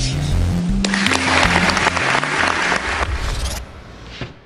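Audience applause over background music, the applause starting about a second in and cutting off suddenly near the end.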